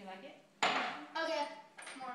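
Kitchen clatter: a sudden knock of a glass or dish on a stone countertop about halfway through, among voices.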